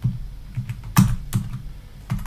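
Typing on a computer keyboard: a few separate keystrokes, the two loudest about a second in.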